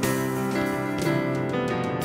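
Instrumental passage of a worship song, the band playing between sung lines with sustained chords.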